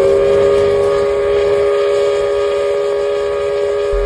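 Steam whistle of the 1912 Swiss lake steamer Neuchâtel sounding one long, loud, steady blast on two notes at once, like a chord, blown by a pull on its cord from the wheelhouse.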